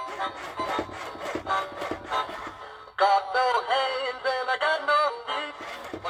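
Swingin' Sammy Swordfish singing fish toy starting its recorded song the moment its button is pressed: an instrumental intro with a beat, then a voice singing from about three seconds in.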